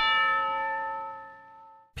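A single struck bell-like chime note, part of a musical score, ringing with several clear overtones and fading away over almost two seconds.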